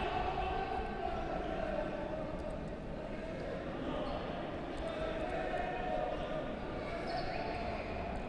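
Futsal played on a wooden sports-hall court: the ball knocked and kicked between players, heard faintly through a steady echoing hall ambience with distant voices.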